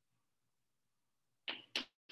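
Chalk writing on a blackboard: near silence, then two short chalk strokes against the board about a second and a half in, a quarter second apart.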